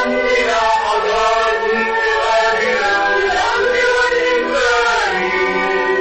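A vocal trio singing an Arabic Moroccan song together, in long held notes that glide up and down between pitches.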